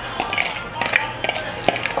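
A metal fork scraping and knocking against bowls as grated carrot is tipped from one bowl into a plastic mixing bowl: a scatter of short clicks and clinks.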